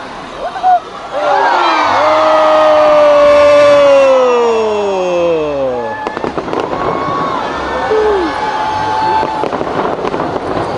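A spectator's long cheer, falling steadily in pitch over about four seconds, then fireworks crackling and popping from about six seconds in, with more short cheers over them.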